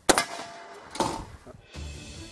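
Two sharp bangs about a second apart, each followed by the ring of the steel plate: 12-gauge wax slugs fired at an AR500 steel armour plate. Background music comes in near the end.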